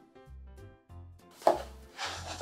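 Background music with a low, steady beat, about two pulses a second. About one and a half seconds in comes a single sudden noisy sound that fades away over about a second.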